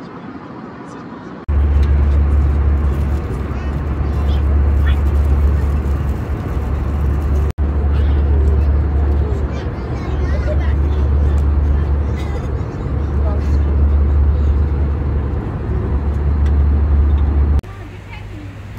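Steady low drone of an airliner cabin in flight, with passengers talking faintly under it. The drone starts about a second and a half in, drops out for an instant midway, and stops just before the end.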